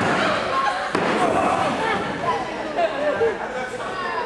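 Two heavy thuds on a wrestling ring mat, one at the start and one about a second in, over spectators shouting and talking.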